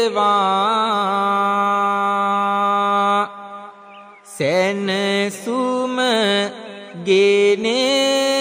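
A monk's voice chanting Sinhala kavi bana verse in a drawn-out melodic style. One note is held steadily for about three seconds, and after a brief pause about three seconds in, the chant resumes with the pitch rising and falling.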